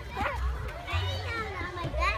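Young children's voices at play: high-pitched calls and chatter without clear words, coming and going through the two seconds.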